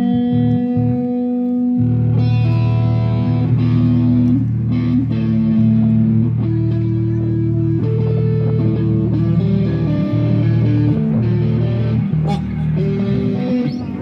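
Electric guitar played loud through an amplifier: one note held for about two seconds, then a slow line of single notes over a low sustained note, with no drums, as a warm-up before the set. It fades near the end.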